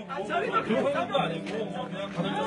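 Several people talking at once in an overlapping conversation, no single voice standing out.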